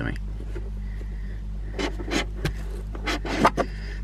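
Plastic trim removal tool prying at a car's A-pillar trim panel: several short scrapes and clicks in the second half. Underneath runs a steady low engine hum from a motorcycle idling in the background.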